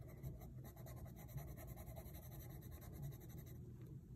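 Green coloured pencil scratching faintly on sketchbook paper in quick short strokes, drawing in a leaf's veins; the strokes stop about three and a half seconds in.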